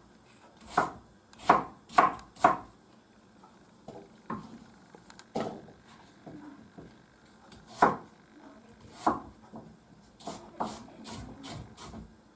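Knife chopping apples into small cubes on a wooden cutting board: sharp knocks of the blade meeting the board, four in quick succession in the first few seconds, then scattered strokes and another quick run near the end.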